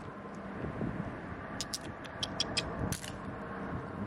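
A hand moving through shallow seawater over sand: steady sloshing with a run of small sharp clicks about halfway through, like shells or pebbles knocking together, and one louder rush of noise about three seconds in.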